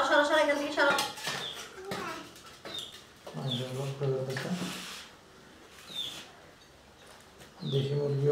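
People's voices, with a low voice held for about a second midway. Several brief high chirps are spread through it.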